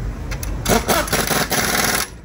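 Pneumatic impact wrench on a wheel's lug nuts: a few short clicks, then the wrench running in a loud rattle for about a second and a half before it stops suddenly.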